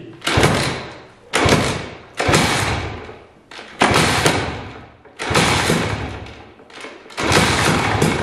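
Koshine 150 two-stroke enduro engine being kick-started without throttle and not catching: six kicks, each a sudden loud start that fades away over about a second.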